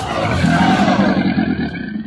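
Edited-in sound effect: a loud rush with several falling pitch glides, cutting off near the end.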